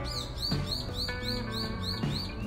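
Background music with sustained instrumental notes, over which a bird chirps quickly and evenly, about four short chirps a second.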